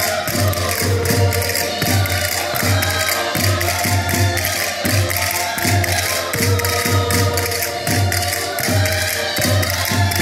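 Portuguese folk music played on several diatonic button accordions: a lively tune with a steady bass beat about twice a second and quick clicking hand percussion over it.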